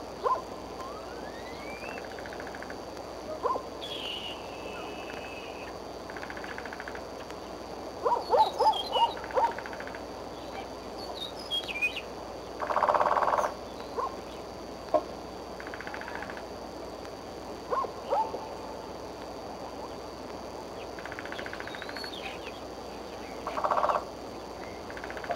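Bald eagle calls over a steady outdoor hiss: scattered short, sharp call notes, with a quick run of them about eight to nine seconds in and a longer, harsher call about thirteen seconds in, mixed with fainter high chirps from other birds.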